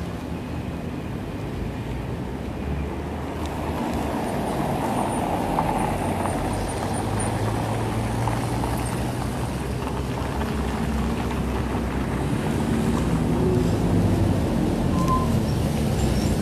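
City road traffic running steadily, with the low drone of a heavier vehicle's engine coming in through the middle and growing a little louder toward the end.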